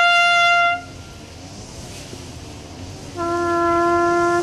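Solo trumpet playing slow, held notes of a ceremonial call. A high note is held for just under a second, then there is a pause of about two seconds, then a note an octave lower is held from about three seconds in.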